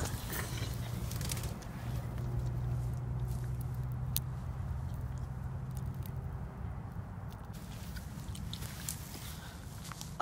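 Low, steady vehicle engine hum that fades out after about six seconds, with dry brush and twigs crackling and rustling close by.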